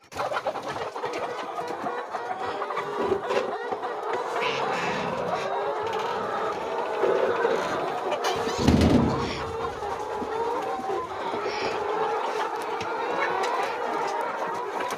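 A large flock of brown layer hens clucking and chattering in a poultry house, a steady overlapping chorus of many birds. A brief low thud stands out about nine seconds in.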